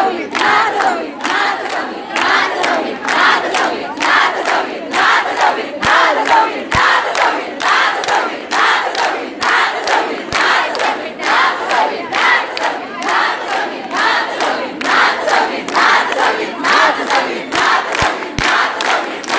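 A large crowd chanting and cheering together in rhythm, with a sharp beat about twice a second.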